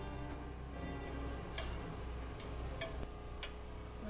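A neighbour's pressure washer running with a steady drone, with a few sharp metallic clicks of steel tongs against the grill grate as the grilled steak pieces are picked up.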